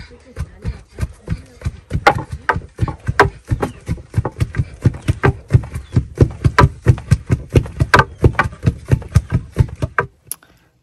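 Long wooden pestles pounding pearl millet (mahangu) in a mortar, several women striking in turn: a fast, irregular run of dull thuds, several a second. This is the grain being beaten down into flour.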